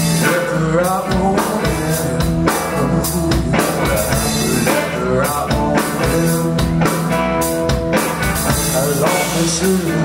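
Live rock band playing: electric guitar, keyboard and drum kit together at full volume, with a steady beat.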